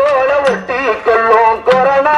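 A man singing a Tamil gaana song set to a film-song tune into a handheld microphone, with a wavering, ornamented melody.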